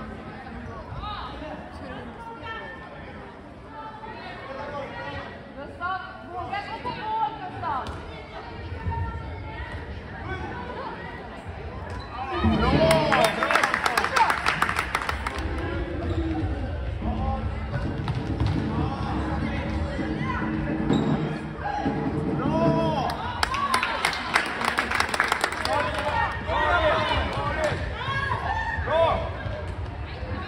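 Handball game in a sports hall: the ball bouncing on the court, with players and spectators shouting. The shouting grows much louder twice, about twelve seconds in and again around twenty-three seconds.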